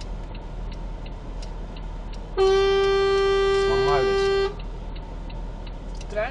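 A vehicle horn sounded in one steady, unbroken blast of about two seconds by the vehicle waiting behind, honking at the car stopped at the red light to get it to move off.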